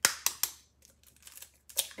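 Light clicks and taps from handling things at a kitchen counter: three sharp clicks in the first half second, then a few fainter ones near the end.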